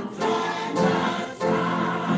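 Church choir singing gospel music in held chords that change about every half second.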